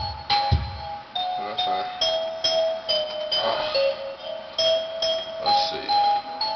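Hip-hop beat playing: a chiming, bell-like keyboard melody repeating throughout, with heavy kick drums in the first second.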